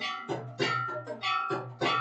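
Temple aarti accompaniment: metal bells struck in a fast, steady rhythm, about three strikes a second, each strike ringing on, over a low steady drone.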